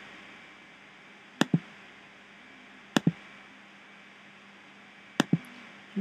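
Three computer mouse clicks, each a quick double tick of button press and release, spaced a second or two apart, over a faint steady hiss.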